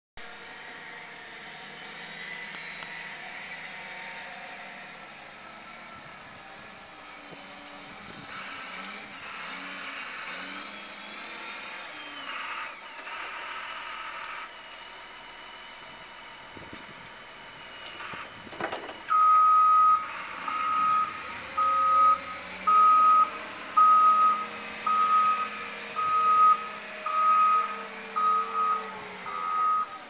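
Caterpillar backhoe loader's diesel engine running as it works the snow, with a couple of knocks, then its reversing alarm beeping loudly about once a second from about two-thirds of the way in.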